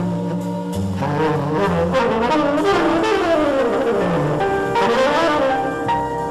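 Live jazz ensemble playing, with horns carrying moving melody lines over sustained bass notes.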